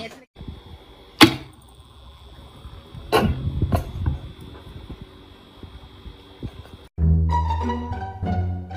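A small electric fan running with a steady high-pitched whine, with a sharp click about a second in and two dull knocks around three seconds in. Near the end, music with plucked strings starts suddenly.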